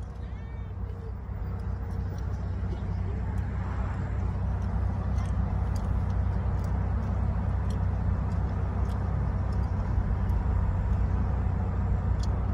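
A car's engine idling, heard from inside the cabin as a steady low rumble with a rushing hiss that grows slightly louder over the first few seconds.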